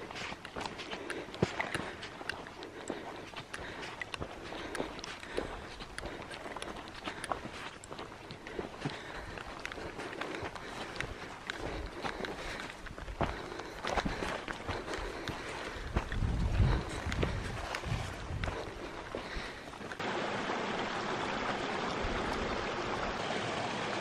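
Footsteps of a hiker walking a narrow dirt trail, with plants brushing against legs and pack and irregular light clicks and knocks, and a few low thumps a little past the middle. Near the end the sound changes suddenly to a steady, even rushing noise.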